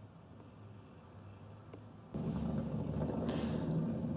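Faint room tone with a low hum, then a sudden step up about halfway through to a louder steady low-pitched hum with brief hiss.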